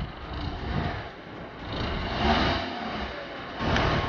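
A Kia Rio's engine running at low revs as the car reverses slowly into a parking space, with a steady rumble that swells and dips a little.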